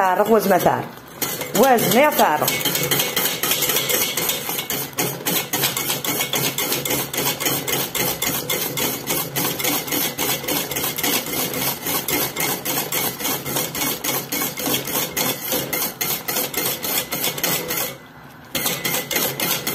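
A utensil stirring a thick yellow mixture in a stainless steel pot on a gas hob, scraping and clicking against the metal in a quick, even rhythm of several strokes a second.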